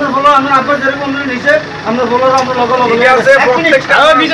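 A man talking continuously, with no other clear sound.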